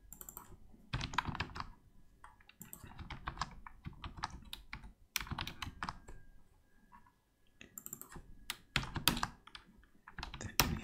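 Typing on a computer keyboard: quick runs of keystrokes broken by brief pauses.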